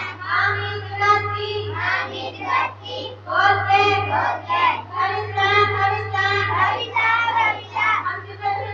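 A group of children singing a prayer song together in phrases of held notes, with a steady low hum underneath.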